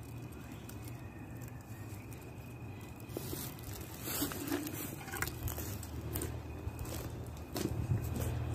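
Faint rustling and crackling of leafy mum stems being broken off and handled by hand, with a few short clicks scattered through.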